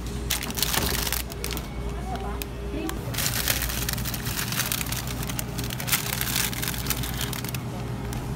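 Plastic ice cream bar wrappers crinkling and rustling as hands dig through a chest freezer, in two long bursts, over a steady low hum.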